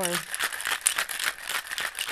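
Ice rattling inside a metal cocktail shaker shaken hard with one hand, a fast, continuous clatter.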